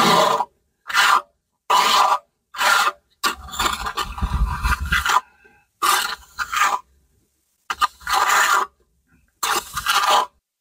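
Hand trowel scraping stucco across a plastered concrete block wall, in a series of short strokes about a second apart. One longer stroke comes about three to five seconds in.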